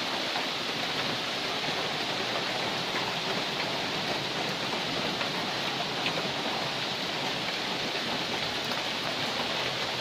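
Steady rain falling in the forest, an even hiss that holds at the same level throughout.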